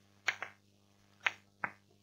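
Chalk tapping on a blackboard while writing: four short, sharp clicks, two close together near the start and two more about a second later.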